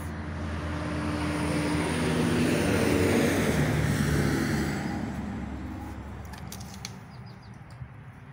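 A road vehicle passing by. Its engine and tyre noise swells to a peak about three seconds in, then fades away.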